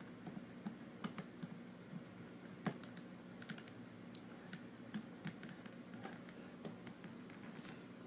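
Faint, irregular light plastic clicks and taps of cables and connectors being plugged into a lapdock and hands handling it, over a faint steady hum.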